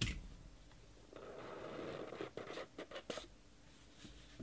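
Lid of a cardboard trading-card hobby box being slid off: a soft scrape lasting about a second, starting about a second in, then a few light clicks and taps as the box is handled.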